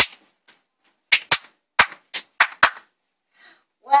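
A child clapping her hands: about eight sharp claps in an uneven rhythm over the first three seconds, then a pause.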